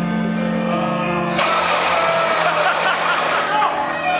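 Live stage band music with low held notes. About a second and a half in, a sudden, louder wash of noisy sound sets in over it.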